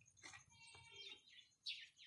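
Faint bird chirps over near silence, with a couple of short falling calls near the end.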